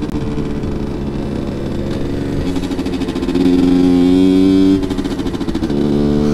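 Rieju MRT 50's 50 cc two-stroke engine pulling under way, restricted to 25 km/h and held at high revs by its short gears. The revs climb and get louder past the middle, then drop back about five seconds in.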